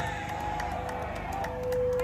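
Crowd noise from a street demonstration, with one steady held tone running through it that grows louder near the end.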